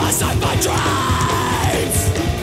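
Punk rock song with a yelled vocal over a full band; a long held vocal note about halfway through slides down near the end.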